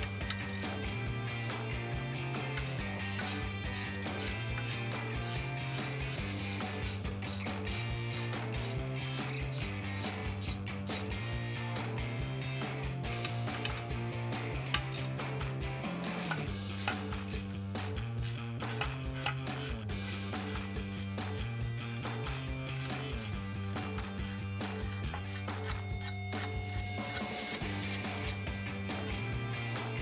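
Hand ratchet clicking as bolts on a downpipe-to-transmission bracket are loosened and run out, in many quick clicks. A background music track with a bass line that steps between notes every second or two plays under it.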